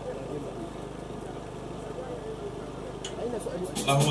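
Faint background chatter of people talking over a steady low electrical hum from the sound system.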